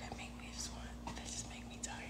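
Faint, low voice, close to a whisper, over a steady low hum.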